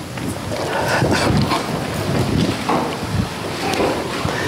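A congregation rising to its feet: a steady rustle and shuffle of clothing, seats and feet with scattered low thumps.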